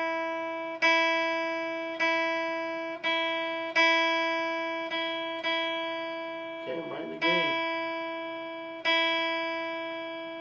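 The open high E string of an electric guitar plucked repeatedly, about eight times, each note ringing and fading before the next, while the tuning peg is adjusted to bring the string into tune.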